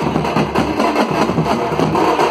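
Street drum band playing: several snare drums and a large bass drum beaten with sticks in a loud, fast, continuous rhythm.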